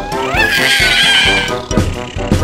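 Children's-song backing music with a cartoon kitten's high, rising cry about half a second in, held for about a second.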